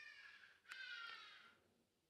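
Near silence: room tone, with two faint high-pitched calls, the second lasting close to a second.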